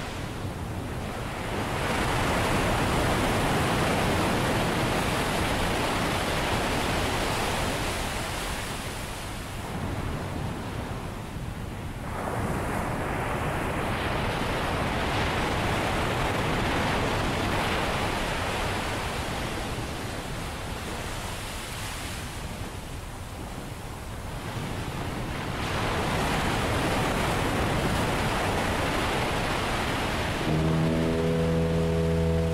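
Ocean surf: waves washing in and drawing back in three long swells, each several seconds long, with quieter dips between them.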